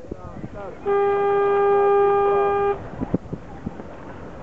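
A horn sounds once, a single steady blast of just under two seconds starting about a second in, taken here as the start signal of a sailing race. Voices are heard around it.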